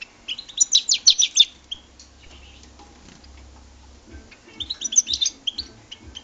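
European goldfinch song: two bursts of rapid, high twittering chirps, each about a second long, the first just after the start and the second about four and a half seconds in, with a few single chirps between.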